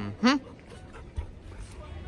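A dog gives one short, loud yelp with a slightly rising pitch while playing with another dog.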